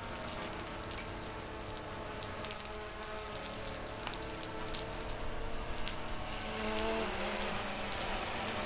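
Softwash solution spraying from a nozzle at the top of a long application pole and pattering onto a building's glass: a steady, rain-like hiss with a few light ticks.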